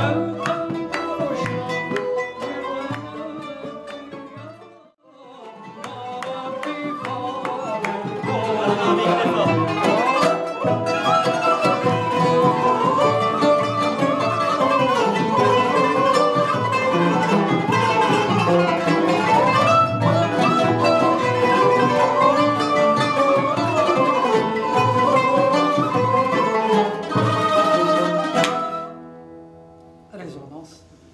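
A small traditional Turkish-Arab ensemble rehearsing: plucked oud notes at first, then after a brief break about five seconds in, the ensemble plays with a ney flute carrying gliding melody lines over a steady plucked pulse. The music stops abruptly near the end.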